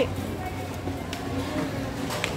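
Supermarket background: other shoppers' voices murmuring over a steady low hum, with a couple of faint clicks.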